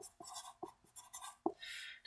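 Sharpie marker writing on paper: a run of short, faint scratchy strokes with a few sharp ticks as the tip meets the page.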